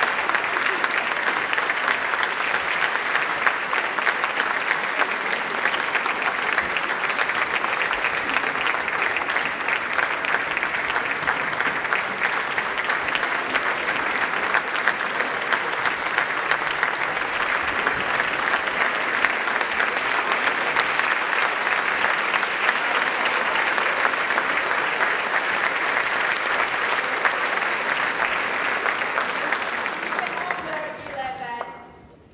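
Concert audience applauding: many hands clapping in a dense, steady wash that holds at the same level throughout.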